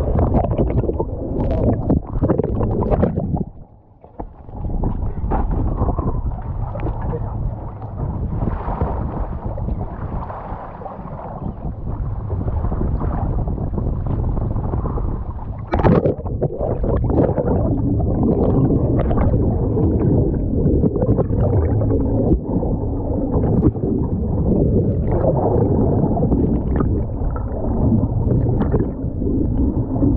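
Muffled water sloshing and bubbling heard through a camera held underwater, dull and bass-heavy, dropping away briefly about four seconds in.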